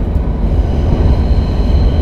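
Low, steady rumble of a passing vehicle, with a faint thin high whine over it in the second half.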